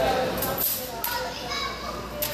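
Indistinct background voices, children's voices among them.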